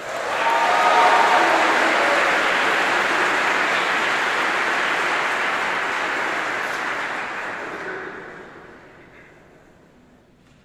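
An audience applauding, the clapping building up within the first second and dying away over the last few seconds.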